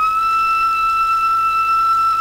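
A flute in background music holding one long, steady high note.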